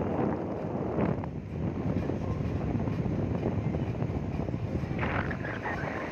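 Car driving along: steady engine and road noise with wind rushing over the microphone, and a brighter rush of noise about five seconds in.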